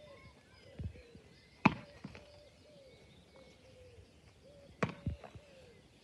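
A small ball knocking off a wall and into goalkeeper gloves in a catching drill: sharp knocks about three seconds apart, the loudest about two seconds in. Birds chirp faintly.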